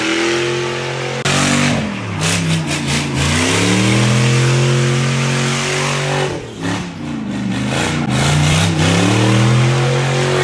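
Pickup truck engine revving hard through smoky donuts over the hiss of spinning, smoking tyres. The revs hold high, drop briefly about a second in and again about six and a half seconds in, then climb back each time.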